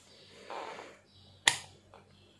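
Rotary range selector switch of a Tenma 72-8155 LCR meter turned by hand, giving one sharp click about one and a half seconds in, after a softer rustle shortly before.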